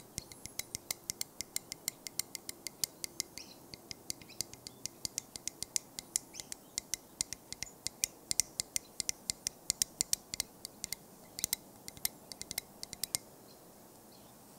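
Close-miked ASMR tapping: quick, light, sharp clicks, several a second in an uneven rhythm, that stop near the end.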